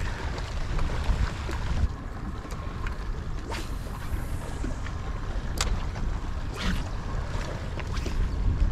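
Wind buffeting the microphone over water lapping against a small boat's hull, a steady rumbling noise. A few brief sharp clicks come about three and a half, five and a half and seven seconds in.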